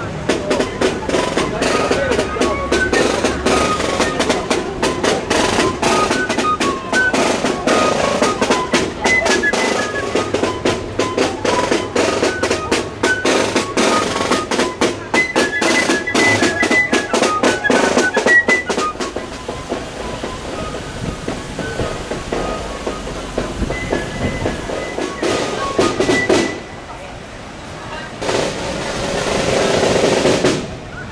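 Marching snare drum beating a quick rhythm as the procession moves off, with a high tune played over it and crowd voices around. The drumming fades out about two-thirds of the way through, leaving crowd chatter.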